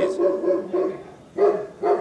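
A dog barking several times in short, pitched barks.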